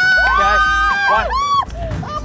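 Several women screaming together in long, high-pitched, overlapping shrieks, excited by a hooked sailfish, with a short cry near the end.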